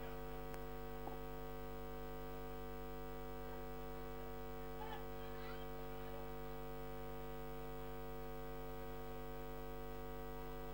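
Steady electrical mains hum with a buzz of many overtones from the pub's karaoke sound system, idling between songs with nothing playing through it.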